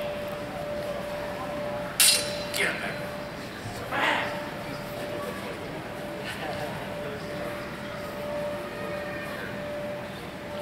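Longswords striking in a sparring exchange: a sharp metallic clash about two seconds in, a lighter one just after, and another about four seconds in, over a steady hum.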